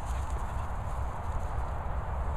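Low, uneven rumbling and dull thuds on a handheld phone microphone being carried across grass: wind and handling noise with footsteps.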